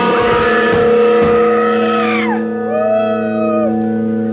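Electric guitars ringing through amplifiers in a sustained droning chord with feedback, a high wailing tone bending downward and then another held high tone over it, at full live-rock volume before the band kicks in.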